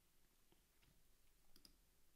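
Near silence broken by a few faint computer clicks, two of them close together about a second and a half in.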